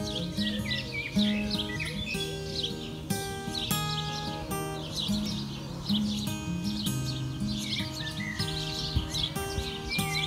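Acoustic guitar playing chords on its own, with no singing, while songbirds chirp over it throughout.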